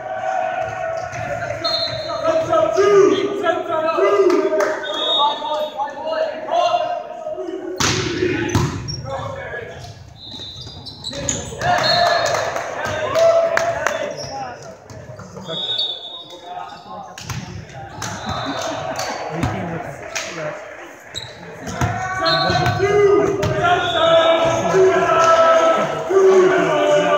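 Indoor volleyball play: players calling and shouting to each other, with several sharp slaps and thuds of the ball being hit, echoing in a large gym.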